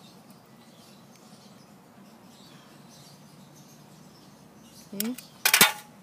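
Faint background hiss, then near the end a short, loud metallic clatter as the metal mounting bracket with its screws is handled.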